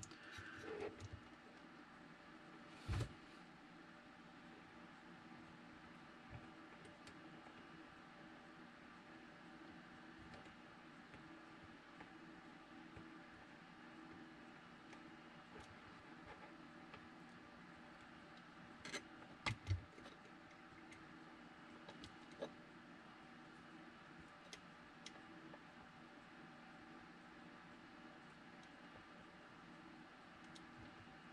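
Near silence: faint steady room hum, with a few light taps and clicks from handling parts on the workbench, one about three seconds in and a small cluster around twenty seconds in.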